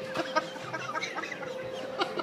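A man laughing in short, rapid, stuttering bursts, over a faint steady tone.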